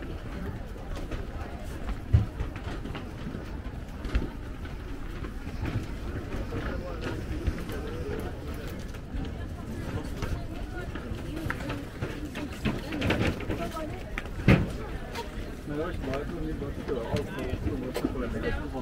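Indistinct chatter of passers-by over outdoor ambience, with footsteps and two sharp knocks: one about two seconds in and a louder one about three-quarters of the way through.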